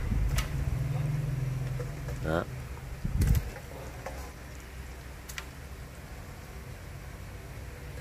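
Tuna eyes going into a pot of boiling coconut water: a few light knocks and one louder thump about three seconds in, then a quiet, steady noise from the boiling pot.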